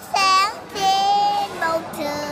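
A young girl singing a slow Vietnamese song: a short sung phrase, then a longer held note about a second in.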